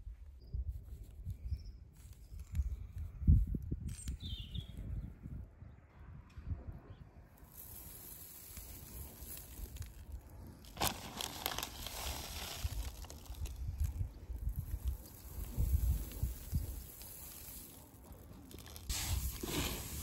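Wildflower seed rustling and pattering as handfuls are poured into the fabric hopper of a spreader seeder, in a few short spells, over a low rumble.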